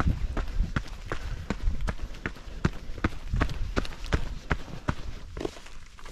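Running footsteps of a trail runner on a dirt and rock mountain trail: a quick, even stride of about three footfalls a second. The footfalls thin out near the end as the runner slows.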